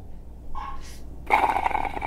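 A man drinking from a mug: a faint sip about half a second in, then a longer noisy slurp from about a second and a half.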